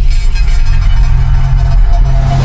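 Electronic intro music from the music video's opening logo: a low bass drone held steady under a shimmering high wash.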